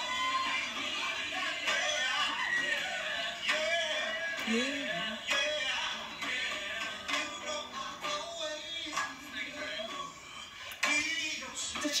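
A man singing live into a microphone, a slow melodic line of held and gliding notes.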